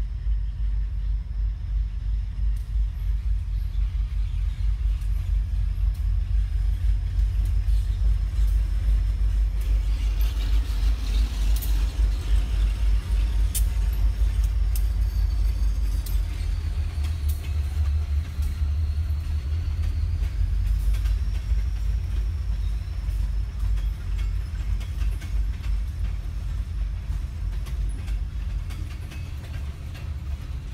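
Slow freight train passing close by: a deep, steady diesel locomotive rumble that swells as the engines go by, then boxcars rolling past on the rails with scattered clicks.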